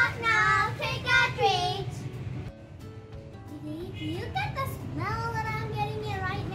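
Children singing a song with musical accompaniment, the high sung phrases pausing briefly about two and a half seconds in before picking up again.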